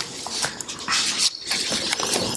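Paper rustling as printed pages are handled close to a lectern microphone, with a couple of light clicks.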